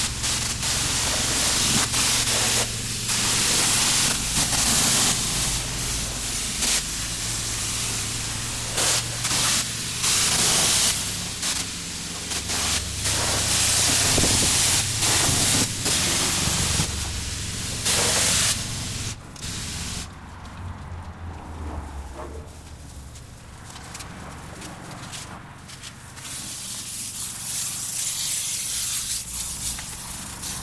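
High-pressure car-wash wand spraying water onto a car's body: a loud, rushing hiss that changes as the jet moves over the panels. About two-thirds of the way through the hiss drops and turns patchier as the spray goes lower on the car. A steady low hum runs underneath.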